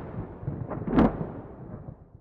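Thunder-like crash from an end-card logo sting: a deep rumble with a sharp crack about a second in, tailing off near the end.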